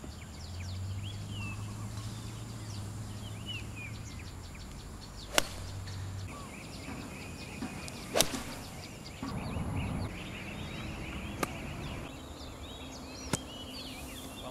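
Golf club striking the ball, four sharp clicks a few seconds apart, the first two the loudest. Birds chirp throughout.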